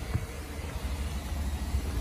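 Outdoor background noise: a low, steady rumble with no distinct events.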